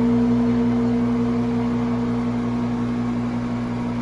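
Steady hum of a ventilation fan: a constant low electrical drone with an even hiss of moving air, unchanging throughout.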